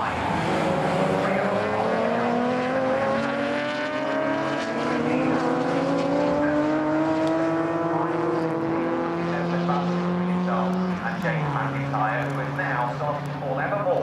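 BMW E36 race car engine pulling hard, its pitch rising steadily for about ten seconds, then dropping sharply with an upshift about eleven seconds in.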